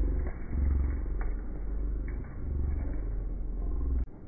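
Low rumble buffeting the microphone, swelling and easing unevenly, with a faint tick or two, cutting off abruptly at the end.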